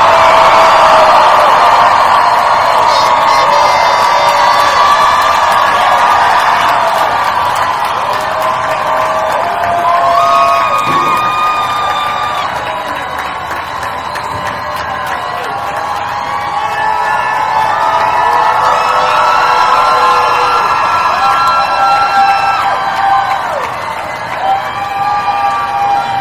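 Large crowd cheering and whooping, with many overlapping long shouts and cries; loudest right at the start, easing in the middle and swelling again later.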